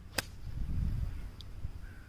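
Pitching wedge striking a golf ball on an approach shot: one sharp click, followed by a low rumble for about a second.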